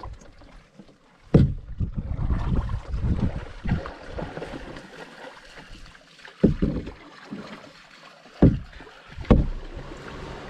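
A canoe being paddled: paddle strokes swishing and splashing in the water, with a few sharp knocks inside the canoe, the loudest about a second and a half in and then three more later on.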